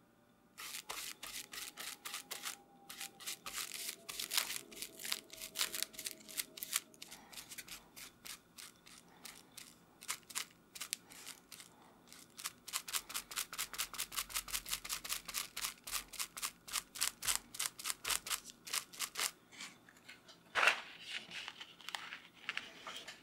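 A long run of quick, crisp clicks from bookbinding handwork, irregular at first and then fairly even at about four a second, with one louder knock near the end.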